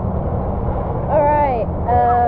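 Steady low rumble of wind buffeting the microphone of a handheld action camera outdoors, with a brief bit of a voice about a second in and again near the end.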